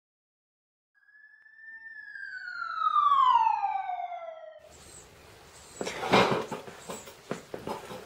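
A siren-like tone winding down, sliding slowly from high to low over about three seconds. About halfway through it gives way to scattered clicks and knocks of parts being handled on a workbench.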